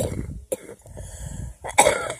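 An elderly woman coughing: a run of hacking coughs, the loudest coming near the end.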